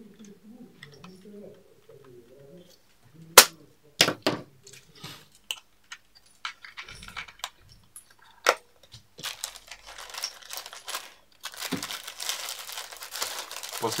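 Several sharp clicks and knocks as a plastic remote control is handled, then bubble wrap crinkling and rustling steadily through the last few seconds as the remote is wrapped in it.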